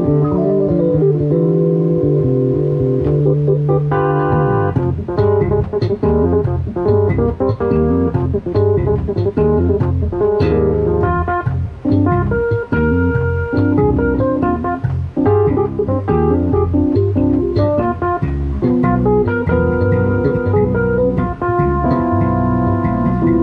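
Electric bass and Yamaha CP stage keyboard playing an instrumental duo piece live. A held chord with a long low bass note opens, then busier, quicker note changes from about four seconds in.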